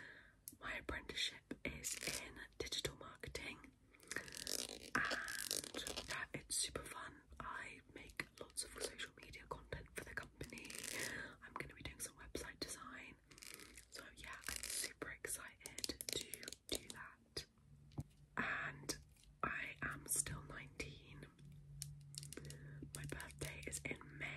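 Whispered talking mixed with quick clicks and taps of long fingernails on handheld beauty items, among them a gold makeup compact.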